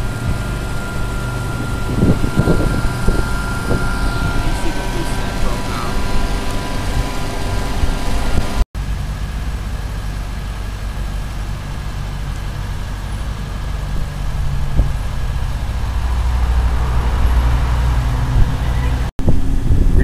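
Steady low engine and road-traffic rumble. It breaks off twice for an instant, about nine seconds in and again near the end.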